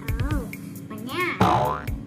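Cartoon sound effects over background music: a few short springy boings rising and falling in pitch in the first second, then a louder falling slide about one and a half seconds in.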